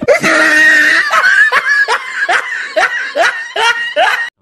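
Loud, high-pitched laughter: a drawn-out shriek for about the first second, then a rhythmic run of short 'ha' bursts, about two or three a second.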